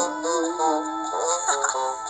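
Background music from an animated children's Bible story app: a melody of held notes that step and glide in pitch, over sustained chords.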